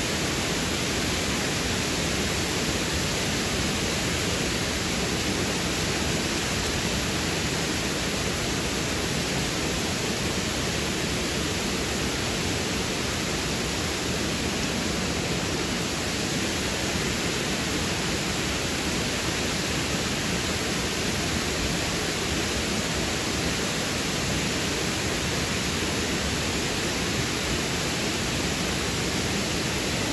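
Steady rush of a large waterfall pouring down a broad rock face into the river pool below.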